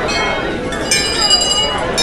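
Temple bells ringing in a clear metallic ring over the chatter of a crowd, with a fresh strike about a second in that rings on.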